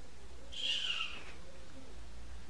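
Snoring: a single high whistle that falls in pitch on the breath out, about half a second in, within a slow cycle of hissing breaths.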